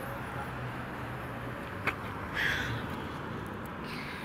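Road traffic: a car drives past in the near lane over steady traffic noise, with a single sharp click just before two seconds in.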